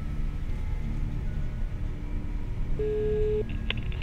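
Phone text-message notification: one short steady beep, about half a second long, nearly three seconds in, over a low steady rumble.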